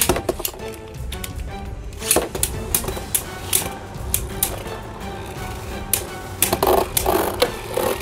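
Two Beyblade Burst spinning tops are launched into a stadium about two seconds in and clash repeatedly, giving many short, sharp clicking hits, over steady background music.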